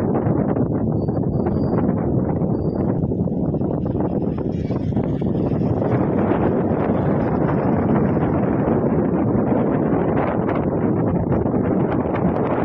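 Steady, loud rushing of wind buffeting the microphone, rising slightly in the second half.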